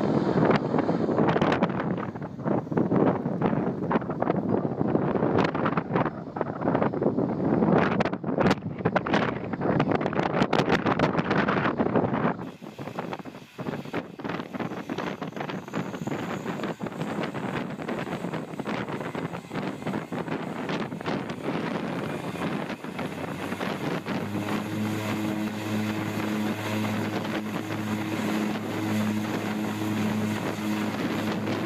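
Wind buffeting the microphone, with a small plane's landing roll beneath it, for the first twelve seconds or so. Then, after a cut, a de Havilland Canada DHC-6 Twin Otter's turboprop engines run on the runway, and a steady low propeller hum comes in strongly about 24 seconds in as it prepares to take off.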